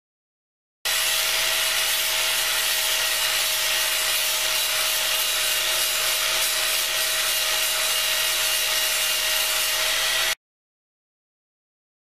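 Angle grinder with a flap disc running steadily while skimming the outer layer off a cattle horn: a steady motor whine under a coarse grinding hiss. It cuts in about a second in and stops abruptly near the end.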